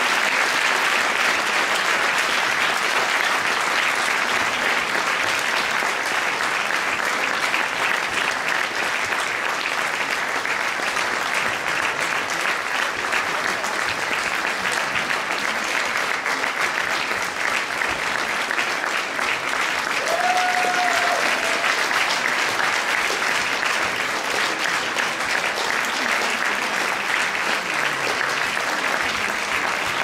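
Audience applauding steadily and without a break for the whole stretch.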